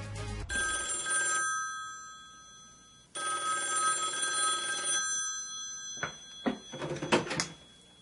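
A telephone ringing twice, each ring a steady trill lasting one to two seconds, followed by a few sharp clicks near the end.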